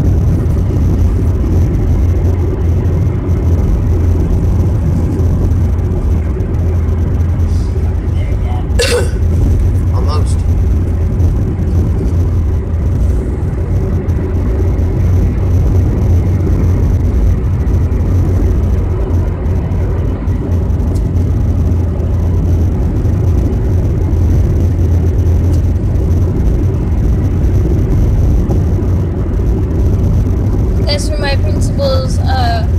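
Steady low drone of a vehicle's engine and road noise heard from inside the cab while driving, with two brief higher-pitched sounds about nine and ten seconds in.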